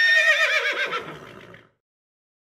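A horse whinnying once: a wavering call that falls in pitch and fades out after about a second and a half.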